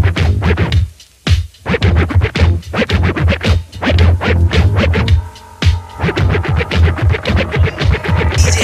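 DJ scratching a vinyl record over a bass-heavy hip hop beat, in quick back-and-forth strokes, with a short drop in the sound about a second in.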